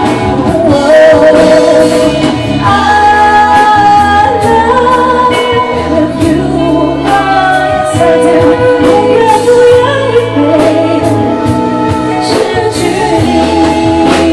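A woman singing a song live into a handheld microphone over a musical accompaniment with a steady beat.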